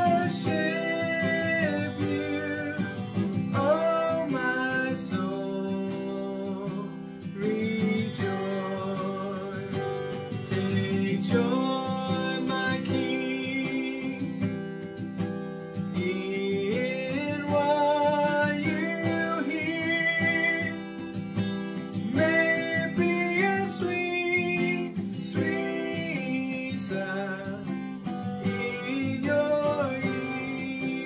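A man singing a slow worship chorus in the key of C while strumming an acoustic guitar.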